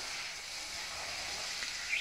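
Steady background hiss with no distinct events, between spoken phrases.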